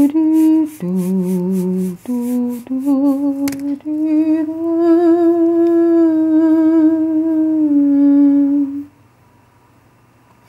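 A woman humming a slow tune, a string of held notes with vibrato, the last one drawn out for about five seconds before she stops near the end.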